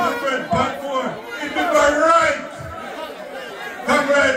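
Speech: a man speaking loudly into a handheld microphone, amplified, with other voices chattering behind him.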